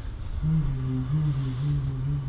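A man's low, wordless voice, held as a long drawn-out hum or moan with small steps in pitch, starting about half a second in.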